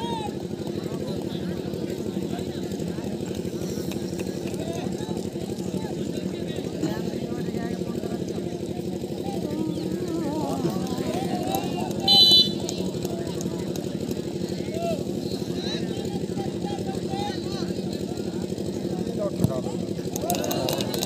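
Spectators chattering faintly over a steady low hum, with one short, shrill referee's whistle blast about twelve seconds in signalling the penalty kick. Near the end a single short knock, fitting the ball being struck.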